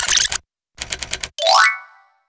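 Animated sound effects for a search bar being typed into: a short noisy burst, then about six quick keyboard-typing clicks, then a rising pitched glide that fades out.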